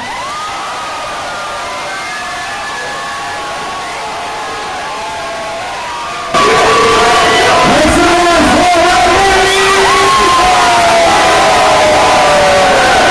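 Bar crowd cheering, whooping and shouting right after the music cuts out. About six seconds in it suddenly becomes much louder.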